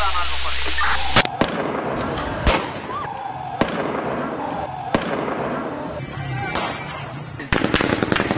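Crowd voices shouting, then a series of sharp gunshot cracks, irregularly spaced about a second or more apart, with shouting between them. This is gunfire at street protests.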